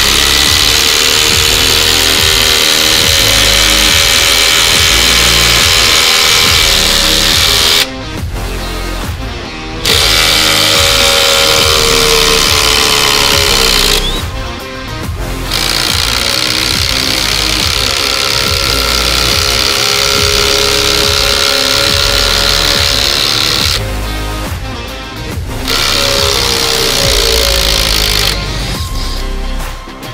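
Cordless impact drivers (Flex 24V FX1371A, then Makita 40V XGT GDT01) hammering six-inch lag bolts into thick timber. There are four runs: about 8 s and 4 s with the Flex, then about 8 s and 3 s with the Makita, each separated by a short pause.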